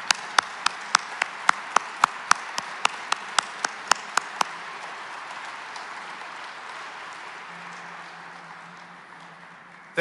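Audience applause in a large hall, slowly dying away. Over it, in the first four and a half seconds, come one person's sharp, loud claps close to the microphone, about four a second.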